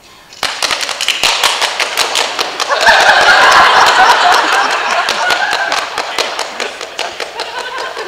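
A small group of people clapping in a theatre, distinct claps several a second, with cheering voices joining from about three seconds in.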